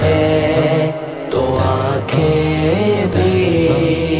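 Wordless devotional vocals of a naat: layered voices holding long, gliding notes over a low sustained drone, with a short dip about a second in.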